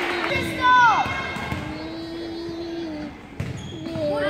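Volleyball game in a school gym: a ball bouncing on the hardwood floor, with voices in the echoing hall. About a second in there is a short, loud squeak that falls in pitch, and a few sharp knocks come near the end.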